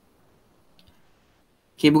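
Near silence with one faint, short click a little under a second in, then a man says "okay" near the end.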